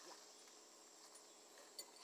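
Near silence: the faint, steady, high-pitched chirring of crickets, with a small click near the end.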